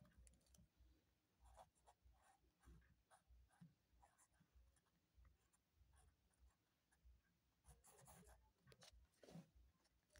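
Very faint scratching of a ballpoint pen writing on paper, in short irregular strokes that grow a little busier near the end.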